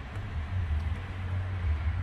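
Steady low hum with a faint even hiss inside a parked car's cabin.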